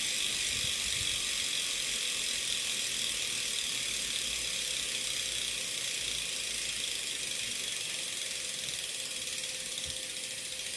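Freehub pawls of a freely spinning road-bike rear wheel, ticking rapidly as the wheel coasts down. The ticking gets gradually quieter as the wheel slows.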